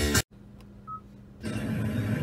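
Radio broadcast audio cuts off abruptly a quarter second in. About a second of low hum follows, with one short high beep in the middle, and then the radio's background sound comes back.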